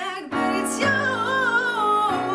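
A woman singing with electronic keyboard accompaniment in piano voice: chords are struck about a third of a second in and again near the one-second mark, under one long sung note that wavers slightly.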